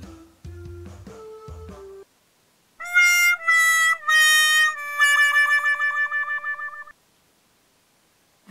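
Music that stops about two seconds in. It is followed by a "sad trombone" comedy sound effect: four brass notes, each a little lower, the last held long with a wobble. The effect is the classic signal that something has failed, here a product that does not work.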